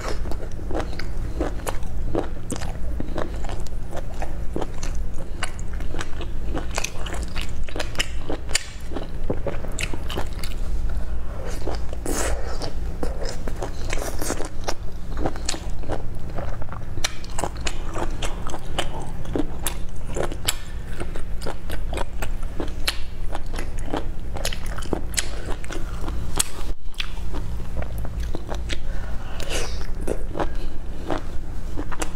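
Close-miked mouth sounds of a person biting and chewing cooked baby octopus: a dense, continuous run of short clicks and smacks. A steady low hum runs underneath.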